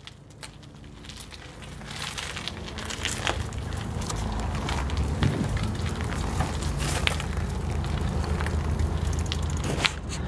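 Wind blowing across the camera's unshielded microphone, a low rumble that builds over the first few seconds and then holds steady, with crackling and small clicks from the mountain bike rolling over debris-strewn concrete.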